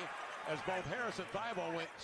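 Quiet NBA television broadcast audio: a commentator speaking over the sound of the game, with a basketball bouncing on the court.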